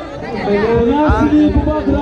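A man speaking, with the chatter of a crowd behind him.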